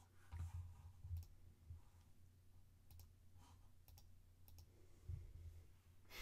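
Faint, sparse clicks of a computer keyboard and mouse: a cluster of keystrokes and clicks in the first second, a few scattered clicks later, and near silence between them.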